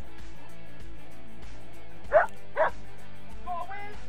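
A dog barks twice, half a second apart, about two seconds in, then gives a brief higher yelp near the end, over steady background music.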